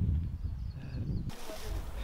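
Wind buffeting the microphone with an uneven low rumble, with a few faint high chirps over it. A little over a second in, it cuts abruptly to a steady, even outdoor hiss.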